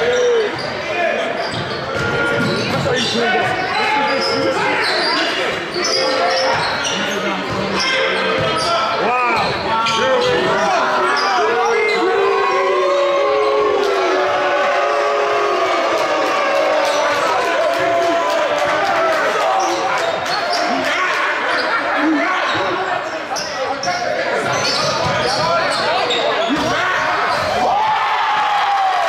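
Basketball bouncing on a wooden gym floor as it is dribbled in live play, with players' and onlookers' voices calling out, all echoing in a large gymnasium.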